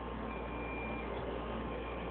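Quiet, steady room noise with a faint hum, and a brief thin high tone about half a second in.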